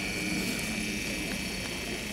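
A defibrillator monitor's built-in strip printer running steadily, feeding out a paper ECG rhythm strip.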